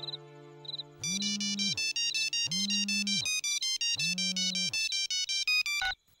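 Mobile phone ringtone playing a repeating electronic melody of quick stepped notes over a low swooping tone that comes back about every second and a half. It starts about a second in and cuts off suddenly just before the end, as the call is answered.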